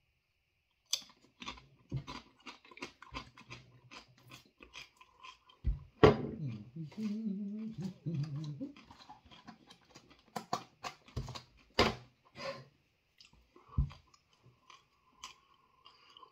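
A person crunching and chewing a crisp spicy chip, with irregular crunches from about a second in. A short voiced murmur and laugh come in the middle.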